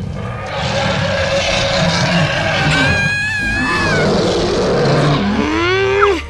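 Background music under a long, noisy cartoon dragon-roar sound effect, with a wavering high screech in its middle and a rising whistle-like glide near the end.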